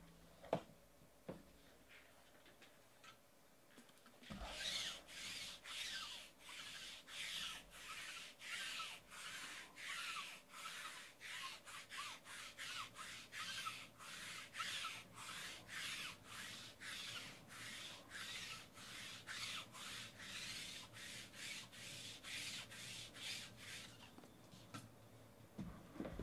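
Rhythmic back-and-forth rubbing by hand, about two strokes a second with faint squeaks, starting about four seconds in after a light knock.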